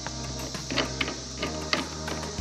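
Steady chirring of crickets, with a few light clicks from a plastic fitting being turned by hand on a poly water tank.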